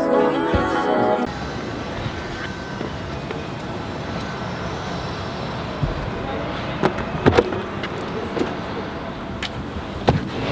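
Background music that stops about a second in, then steady outdoor vehicle and traffic noise, with a few sharp clicks and knocks in the second half.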